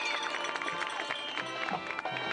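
High school marching band playing: held brass chords with a falling slide in pitch just after the start, over short drum strikes.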